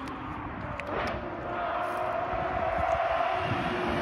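Distant supercar engine running hard as the car approaches along the road, a steady high engine note growing gradually louder.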